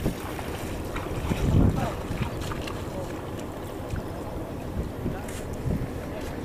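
Steady wind rumbling on the microphone over open sea water, with faint voices in the background.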